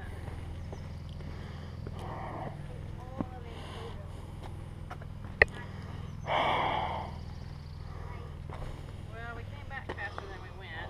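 Footsteps and scuffs of hikers on a rocky trail over a steady low rumble, with one sharp click about halfway through followed by a brief rush of noise, and faint indistinct voices toward the end.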